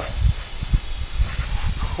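Garden hose spray nozzle hissing steadily as it sprays water onto a motorcycle trike's bodywork.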